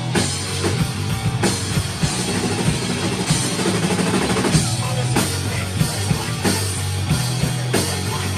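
A rock band playing live: electric guitar and sustained low notes over a drum kit, with cymbal crashes every second or two.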